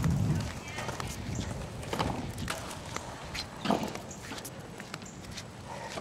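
Irregular footsteps and sharp clicks on pavement from a walk with two small dogs, with a louder tap about two-thirds of the way through.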